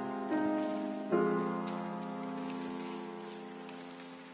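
Organ playing sustained chords: two chord changes in the first second or so, then a final chord held steadily to the close of the music.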